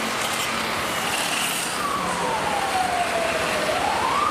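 An emergency-vehicle siren wailing, its pitch sliding slowly down through the second half and starting to rise again near the end, over a steady hiss of background noise.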